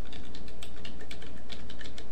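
Typing on a computer keyboard: a quick run of keystrokes as a word is typed, over a steady low hum.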